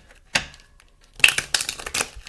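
A deck of tarot cards being handled and shuffled over a wooden table: a single sharp snap about a third of a second in, then a quick run of fluttering card clicks through the second half.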